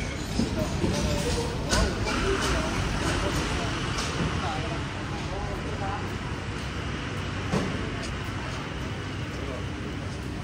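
Street ambience: passers-by talking in the first few seconds over a steady low rumble of passing road traffic, with a few short knocks.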